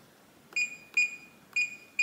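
Reliabilt electronic deadbolt keypad beeping once per key press as a new programming code is entered. There are three short, high beeps about half a second apart, starting about half a second in.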